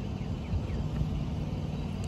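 Diesel engine of a semi truck running nearby: a steady low rumble.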